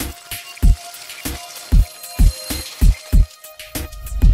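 Intro music with a steady thumping beat, about two beats a second.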